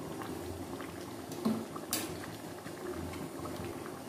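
Thin Bengali chicken curry (jhol) with potato and papaya boiling in an open pan: a steady bubbling with small ticks, and a couple of sharper pops around the middle.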